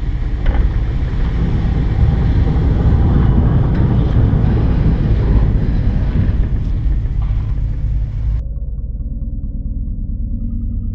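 A loud, steady low rumble under a wash of hiss. About eight seconds in, the high end cuts away abruptly, leaving the rumble with soft, steady musical tones.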